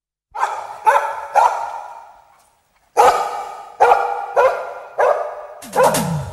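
Dog barking in the intro of a reggae recording: three barks, a pause of about a second, then five more. The reggae band comes in under the last bark near the end.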